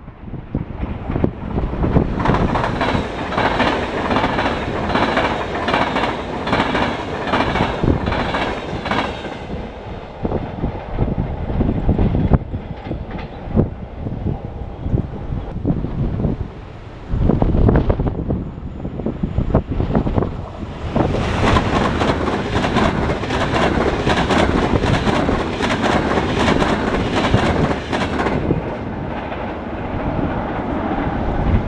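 Trains passing through a station at speed, twice: a loud run of wheel clatter over rail joints for the first nine seconds or so, then another from about twenty to twenty-eight seconds, with quieter rail rumble between.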